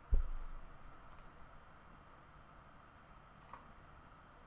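A low thump just after the start, fading over about half a second, then two faint, sharp clicks a couple of seconds apart, typical of computer mouse clicks at a desk, over quiet room tone.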